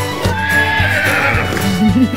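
A horse's whinny sound effect over light background music. The neigh falls in pitch over about a second.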